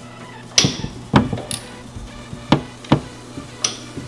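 Five sharp metal clanks at uneven intervals as a ratchet and 14 mm socket are jerked against a turbo nut in the engine bay to break it loose.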